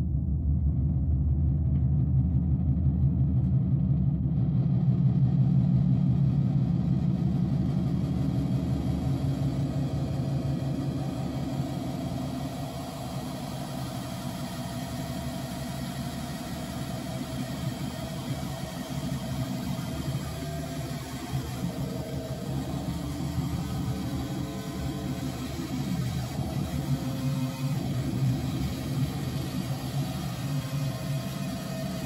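Electronic noise drone from a modular synthesizer run through an Electro-Harmonix Big Muff fuzz pedal: a low steady hum, with a hiss of bright noise opening up above it about four seconds in and spreading higher over the next few seconds.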